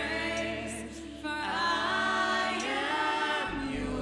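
A small worship team of men's and women's voices singing a slow worship song together through microphones, in long held notes, with a short breath about a second in before the next phrase.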